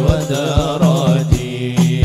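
Hadroh ensemble performing sholawat: male voices chant a devotional melody over a steady beat of frame drums and a deep drum, about two strokes a second. The singing breaks off a little over a second in, and the drums carry on alone.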